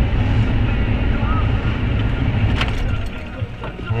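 Low, steady engine and road rumble heard from inside a car's cabin as it drives slowly through traffic, easing a little near the end.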